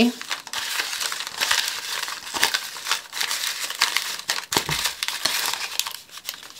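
Small paper envelopes rustling and crinkling as hands rummage through a bowl of them, a continuous crisp rustle with many small clicks.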